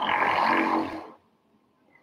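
A woman's breathy vocal sound for about the first second, cutting off suddenly; then near silence.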